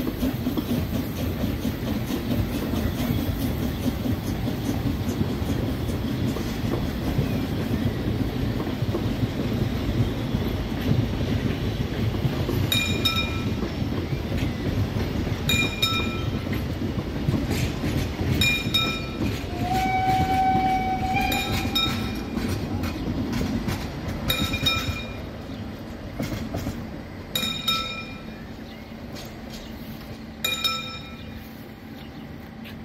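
Narrow-gauge passenger coaches of a steam train rumbling past on the track as the train pulls away, the rumble fading near the end. From about halfway through, a bell strikes about every three seconds, and a short whistle sounds once about two-thirds of the way in.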